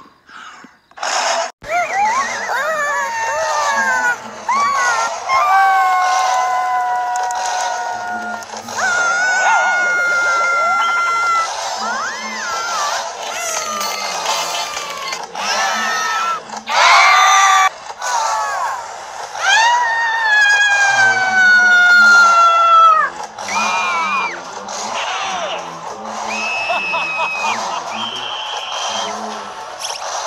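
Cartoon characters screaming one after another, a string of long high cries that mostly slide down in pitch, each lasting a second or two, with short gaps between them.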